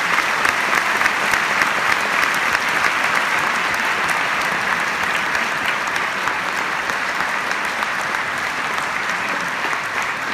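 Large concert-hall audience applauding, a dense steady clapping that eases off slightly toward the end.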